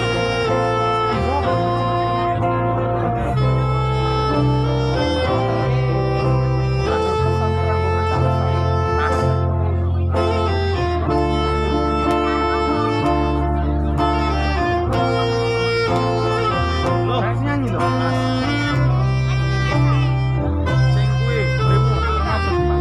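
Live instrumental music: a saxophone plays a melody of held notes over acoustic guitars and a steady bass line, amplified through a PA system.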